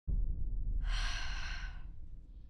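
A boy's long sigh, an exhale lasting about a second that starts about a second in, over a deep low drone that starts abruptly at the beginning.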